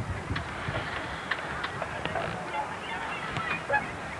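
Geese honking, short scattered calls, with low rumble and sharp knocks from the camcorder being handled.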